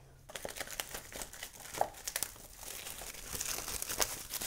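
Plastic shrink-wrap crinkling and tearing as it is pulled off a paperback coloring book: a steady stream of small crackles.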